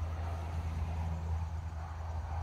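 Steady low background rumble outdoors, with no distinct event standing out.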